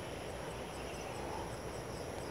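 Quiet outdoor ambience of insects: a steady high-pitched drone with a faint chirp repeating about twice a second, over a low hiss.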